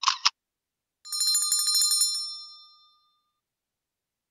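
Two quick clicks, then a small bell rung rapidly for about a second that fades out: the sound effects of a subscribe button being clicked and a notification bell ringing.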